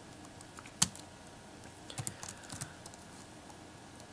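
Keys tapped on a computer keyboard: a single keystroke a little under a second in, then a short cluster of keystrokes around two seconds in.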